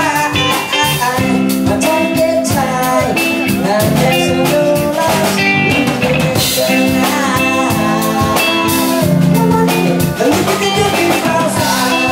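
Live roots reggae band playing through amplifiers: electric guitars, bass guitar and drum kit in a steady groove, with a melody line that glides in pitch over it.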